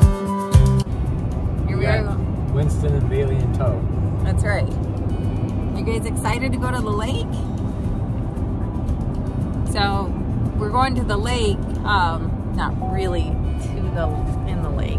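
Background music cuts off about a second in, leaving the steady rumble of road noise inside a moving car. Over it a basset hound in the back seat whines in high, wavering cries, in several bouts.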